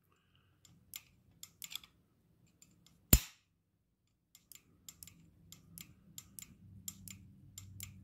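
Irregular sharp clicks and snaps as the contact-breaker points of a 1969 Honda CT90 are flicked open with a screwdriver, firing the test spark plug: ignition power is now reaching the points. One click about three seconds in is much louder than the rest, and the clicks come faster over the last three seconds.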